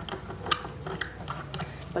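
A few light metallic clicks and scrapes as a bolt is handled and turned in the socket of an iron table-leg bracket.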